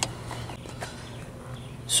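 A sharp click, then a few faint irregular ticks over a steady low hum, from a small palm ratchet with a 9 mm socket and a hand working a speaker-mount nut behind a Jeep Wrangler YJ dash.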